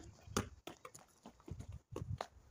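Basketball bouncing on a tiled patio: a quick series of irregular knocks, fainter than the hard impact just before.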